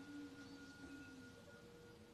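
Near silence with a few faint, steady held tones underneath; the highest tone stops near the end.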